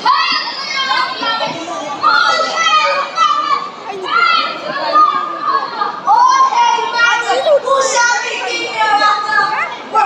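High-pitched children's voices talking and calling out over one another, continuously and fairly loud.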